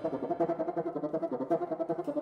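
Live chamber-ensemble music in a fast passage: a rapid, even figure of short repeated notes in the middle register, with the low bass dropped out.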